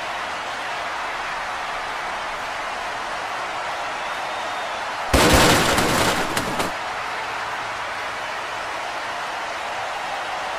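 A steady background hiss, then about five seconds in a loud crash effect lasting about a second and a half, for a figure being thrown into a wheelchair and stretcher.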